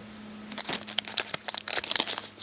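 Plastic trading-card pack wrapper crinkling as it is handled: a quick, irregular run of crackles starting about half a second in.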